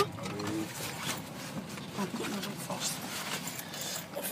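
Steady road and engine noise inside a moving car's cabin, with faint, muffled voices talking briefly near the start and again around the middle.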